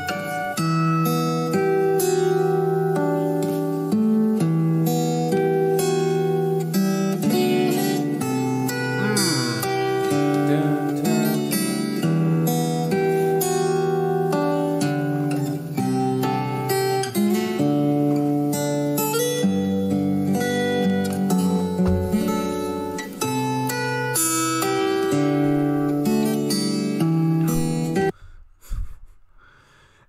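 Solo acoustic guitar played fingerstyle: a slow melody of plucked notes over bass notes. It cuts off suddenly about two seconds before the end.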